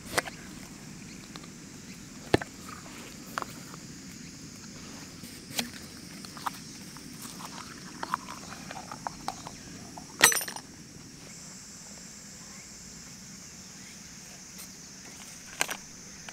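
Aluminium tent-pole sections being handled and fitted together: scattered light knocks and clicks, with one louder, ringing metal clank about ten seconds in.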